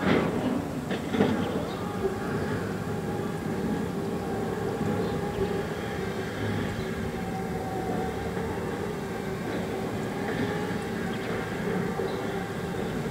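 A steady mechanical rumble with a faint hum of a few held tones, like a running engine or machine, with a couple of short knocks in the first second or so.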